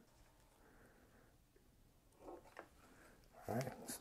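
Mostly quiet room with a few faint handling noises from hem tape and scissors, then a short louder rustle or breath shortly before the end.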